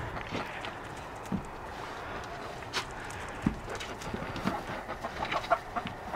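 A hen clucking faintly, with scattered soft knocks and rustles.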